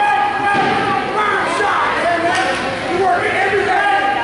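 Spectators shouting and calling out to the wrestlers at once, several voices overlapping.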